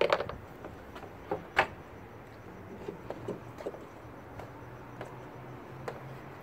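Handling clicks and knocks of plastic and metal as an H13 LED headlight bulb is worked into the back of a headlight housing: a sharp click right at the start and another about a second and a half in, then scattered light ticks, over a faint steady low hum.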